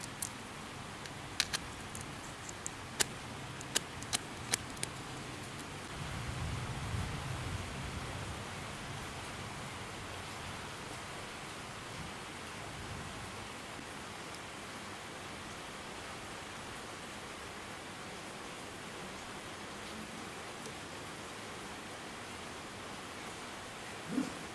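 Steady hiss with a handful of sharp clicks in the first five seconds: scissors snipping at the scooter's fuse-box wiring. A short low rumble follows a few seconds later.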